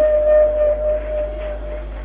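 A single steady electronic tone, one held pitch, that stops shortly before the end, over a low steady hum on an old radio broadcast recording.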